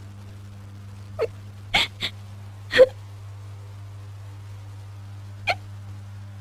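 A woman's short hiccuping sobs: five quick catches of breath, each falling in pitch, four in the first three seconds and one near the end, over a steady low hum.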